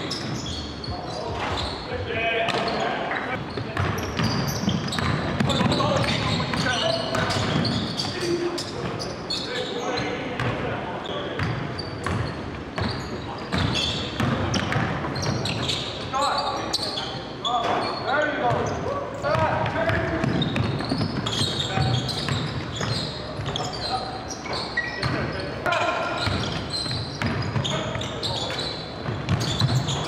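Live basketball game sound in a gym: a basketball dribbled and bouncing on the hardwood floor in repeated short thuds, mixed with players' indistinct voices and shouts, echoing in the large hall.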